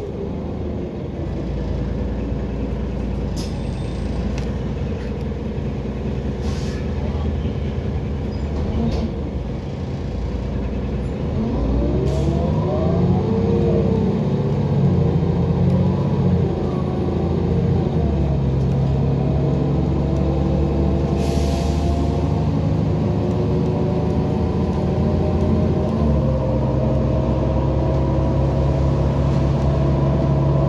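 Heuliez GX127 bus heard from inside the cabin, engine and road noise running steadily. About twelve seconds in, the engine note swoops down and back up, then climbs slowly and gets louder as the bus accelerates.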